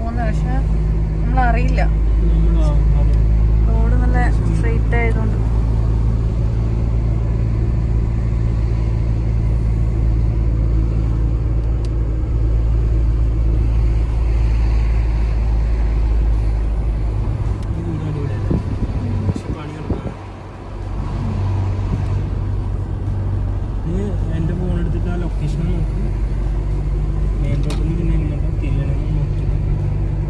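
Car engine and road noise heard from inside the cabin while driving, a steady low hum. About two-thirds of the way through, it drops off briefly and then picks up again.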